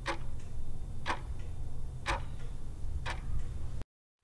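Countdown timer sound effect: a clock ticking once a second, four ticks, over a low steady hum.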